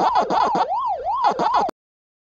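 Pac-Man arcade game sound effect: an electronic tone warbling up and down about twice a second, which cuts off suddenly near the end.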